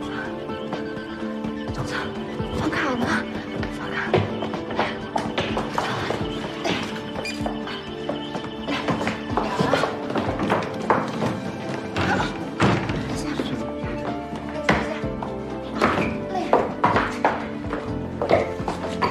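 Background drama score with held, sustained tones, under brief spoken lines and a few dull thuds.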